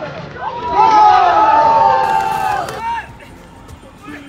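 A crowd of onlookers shouting a long drawn-out cheer together, several voices held at once with their pitch sliding slowly down over about two seconds, then dropping away to street noise.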